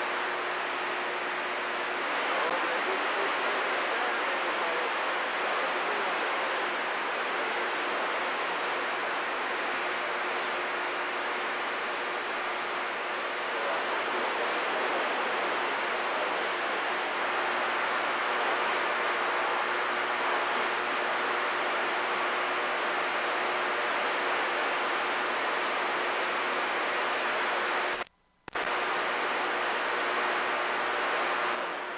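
CB radio receiver hissing with steady band static on an open channel, with a faint steady hum under it. The static cuts out briefly for about half a second near the end.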